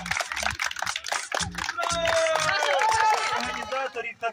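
A small group of people clapping in applause, with music and voices behind it.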